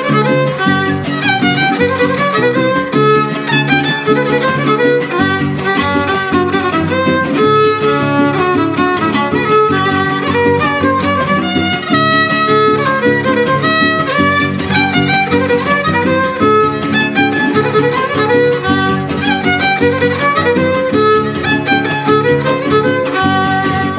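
A son huasteco trio plays an instrumental passage of a huapango with no singing. The violin carries a lively melody over the steady rhythmic strumming of a jarana huasteca and a huapanguera.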